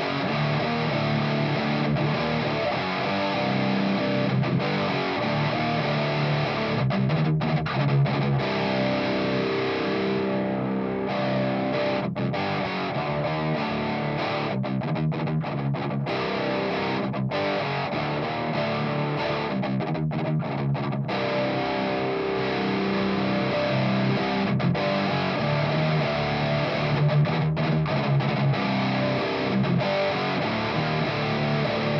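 Electric guitar played through a Haunted Labs Old Ruin distortion pedal into a miked guitar cabinet: heavy, thick distorted riffing, broken by a few short stops between phrases.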